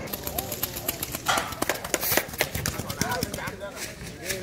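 Men's voices shouting and calling at a loose Arabian mare as she runs in a sand arena, over a rapid, uneven run of sharp cracks and claps.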